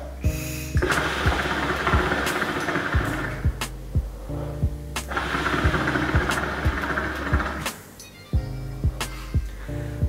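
Water in a Little Danger Piranha hookah bubbling as smoke is drawn through the hose, in two long pulls: one ending about three and a half seconds in, the other about seven and a half seconds in. Background music with a steady beat plays underneath.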